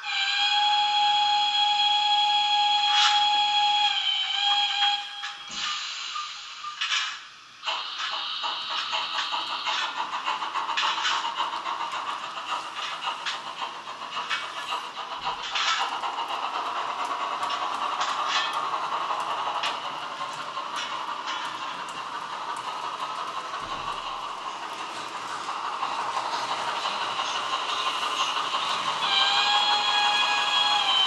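Märklin H0 model steam locomotive's sound decoder blowing a steam whistle for about five seconds, its pitch dipping near the end, followed by the decoder's steam running sound and the rattle of the model train's wheels on the track. The whistle sounds again near the end.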